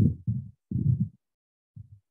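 Three low, muffled bumps, each up to about half a second long, the last one faint and near the end.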